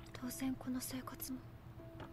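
Quiet spoken dialogue from the anime, low in the mix, over soft background music with held notes and a short note repeated several times in the first second and a half.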